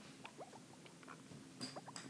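Stylus writing on an iPad's glass screen: a handful of faint, short squeaks and light taps as a word is handwritten.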